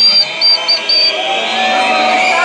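A whistle blown four times at one high, steady pitch, a longer blast and then three short ones, over crowd noise.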